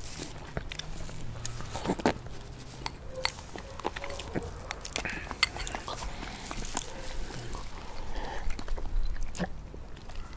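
Close-miked eating sounds from spoonfuls of vanilla ice cream and root beer float: irregular wet mouth clicks and smacks as the ice cream is eaten.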